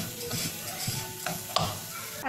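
Silicone spatula stirring and scraping grated coconut around a nonstick wok, with an irregular rustle and a light sizzle from the hot pan.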